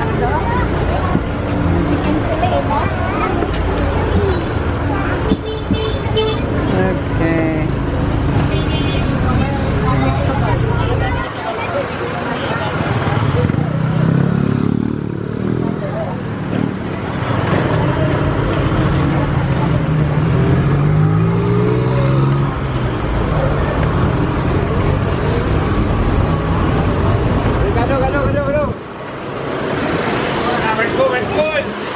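Busy street traffic: engines of passing vehicles, jeepneys and motorcycles among them, running loudly with people's voices mixed in. One engine revs up, rising in pitch, about two-thirds of the way through.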